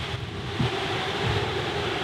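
Wind blowing across the microphone: an even rushing noise with uneven low rumbles.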